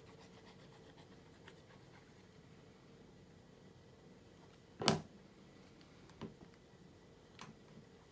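Cardstock die cuts being handled and pressed onto a scrapbook page: faint paper rubbing and a few light taps, the loudest about five seconds in.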